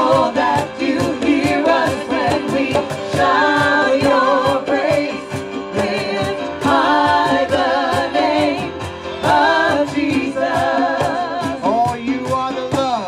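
Live worship song: several voices sing a melody together through microphones over a steady beat of hand drums (congas and cajón).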